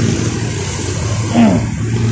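A motor vehicle engine running steadily with a low hum. A brief voice cuts in about one and a half seconds in.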